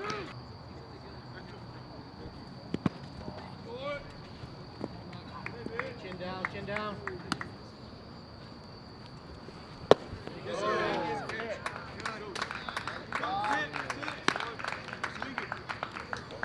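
Ballpark sound at a baseball game: players and spectators calling out across the field, with one sharp crack of the baseball about ten seconds in, followed by a burst of louder shouting.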